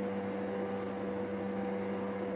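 Steady electrical hum, one low tone with a fainter higher one above it, over a faint hiss.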